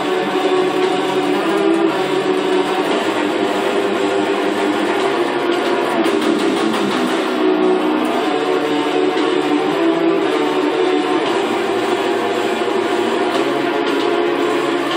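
Electric guitar playing a death metal riff, dense and continuous with rapid picking throughout.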